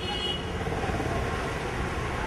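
Steady outdoor background noise, heaviest in the low end, with a few faint high chirps near the start.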